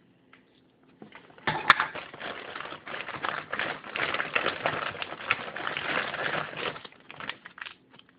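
A plastic bag crinkling as it is handled, starting about a second and a half in and running for about five seconds, with one sharp click near its start.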